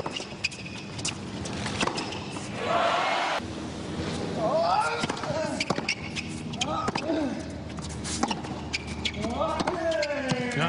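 Tennis rally: rackets striking the ball and the ball bouncing on a hard court, sharp hits every second or so, with short vocal sounds mixed in between the strokes.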